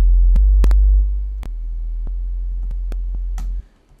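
A sustained sub-bass synth note, a deep fundamental with overtones added by light wave-shaper distortion. It drops in level about a second in as the channel is turned down, holds at the lower level, and stops shortly before the end. A few light clicks sound over it.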